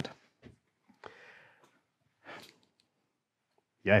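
A pause that is mostly near silence, broken by a few faint soft sounds: a short breathy exhale about a second in and another brief breath-like puff a little past halfway.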